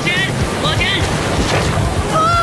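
Breaking surf rushing around a tandem kayak, with wind buffeting the microphone. Two short shouts come in the first second as the wave lifts the boat.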